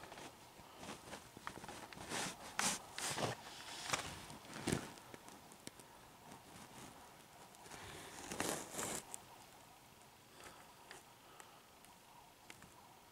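A foot in a cotton sock shuffling and brushing on a wooden floor: faint scattered rustles and scuffs that come in a few louder clusters, with one soft thump just under five seconds in.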